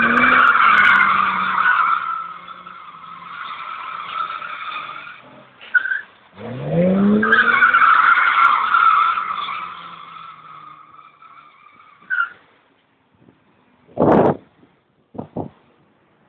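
BMW 320i revving hard with its tyres squealing in a drift, in two long bursts, each opening with a rising rev and fading as the slide ends. A thump and two short knocks follow near the end.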